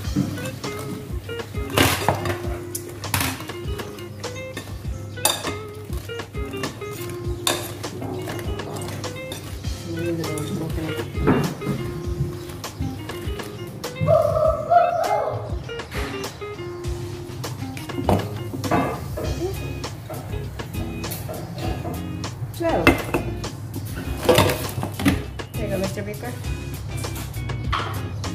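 Background music, with a wire whisk clinking against a glass mixing bowl as thick chocolate batter is stirred, giving irregular sharp clinks every few seconds.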